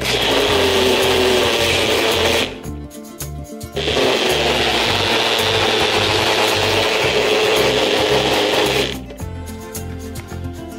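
Personal blender motor running in two bursts, a short run of about two and a half seconds, a brief stop, then a longer run of about five seconds, as its blades chop green plant pieces in water into a smooth liquid.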